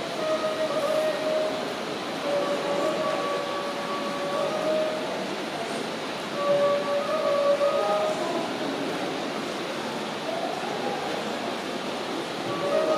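A flute playing long held notes in short phrases, each note lasting a second or two and stepping between a few pitches, with gaps between the phrases, over a steady hiss of room and crowd noise.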